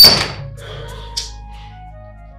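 A single loud thud at the very start, dying away over about half a second, followed by a small click about a second in, over soft background music with long held tones.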